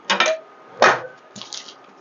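Wrapper of a new block of butter being torn open and unfolded: three brief rustling crackles, the middle one loudest.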